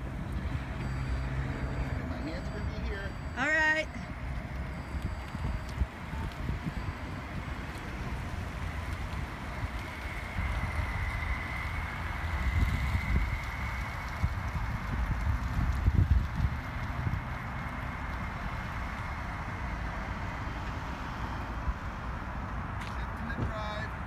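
Uneven low rumble of wind on the microphone outdoors, swelling in gusts around the middle, with a slow-moving car faintly under it.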